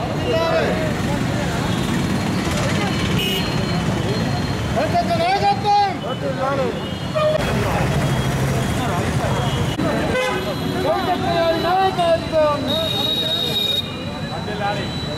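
Men shouting slogans in several spells, over steady street traffic noise with a vehicle horn.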